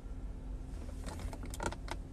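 A plastic spoon scooping in a paper cup of fruit, scraping and clicking several times in quick succession in the second half, over a low steady rumble.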